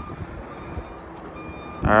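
Steady low background noise with no distinct event; a man's voice begins near the end.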